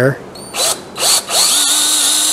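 Cordless drill spinning a tenon cutter onto the end of a wooden dowel, cutting it down to size and round to fit a half-inch hole. The drill gives two short bursts, then runs steadily from about halfway through.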